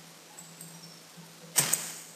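A quiet pause in a speech recording: faint room noise with a low steady electrical hum, and one short rush of noise about one and a half seconds in.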